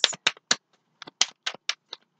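Tarot cards handled in the hands, drawn or shuffled from the deck: a string of short, sharp card clicks and snaps, about eight in two seconds at an uneven pace.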